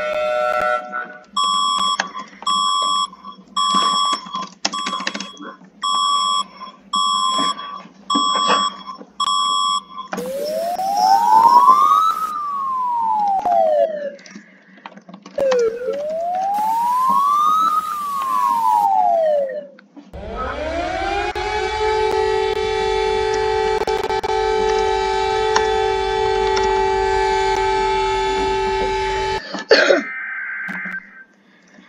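Emergency alert sounds, three in turn. First a run of short beeps, about one every 0.6 s. Then, from about ten seconds, two slow siren sweeps that each rise and fall. From about twenty seconds a siren winds up and holds a steady chord, cutting off just before the end.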